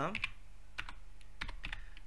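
Computer keyboard typing: about seven irregular key clicks in short runs as code is typed, the space bar among them.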